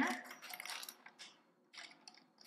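Lego bricks being pressed back onto the top of a small Lego build: a few light plastic clicks in the first second, and one more near the end.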